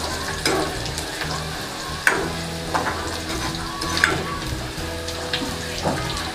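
Chopped onions sizzling in hot oil in a metal kadhai while a steel ladle stirs them, with a couple of sharper ladle scrapes against the pan, about two and four seconds in.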